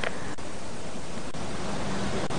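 Steady hiss of background noise from the live outdoor field microphone feed, with faint ticks about once a second.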